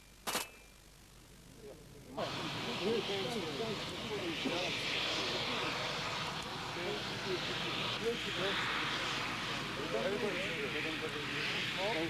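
A single Kalashnikov-type assault rifle shot just after the start, ending a burst of fire. About two seconds in, a loud, steady rushing noise begins and runs on, with men's voices talking under it.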